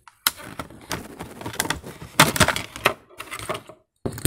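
A clear plastic blister pack being torn off its cardboard backing card to free a die-cast toy car: a run of crinkling and cracking of stiff plastic, busiest about two seconds in.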